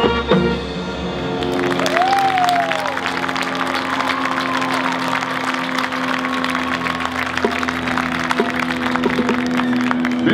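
A high school marching band's brass cuts off just after the start. Then a stadium crowd applauds and cheers, with a whoop or two, over a steady low held tone.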